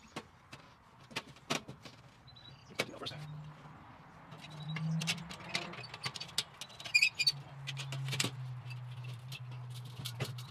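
Metal parts of a kettle grill clinking and knocking as the legs and a wire bottom shelf are fitted by hand: scattered light taps, with a brighter ringing clink about seven seconds in. A low steady hum runs underneath from a few seconds in.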